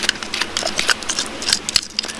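A small metal crevicing pick scratching and prying at gravel packed in a bedrock crack: a run of irregular small clicks and scrapes of metal on rock.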